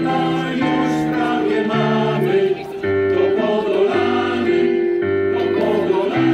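Male choir singing a song in sustained chords, the notes held and changing every second or so over a low bass line.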